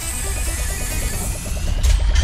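Intro sound design over music: a deep rumble with a hissing whoosh, and a faint tone rising slowly in the second half.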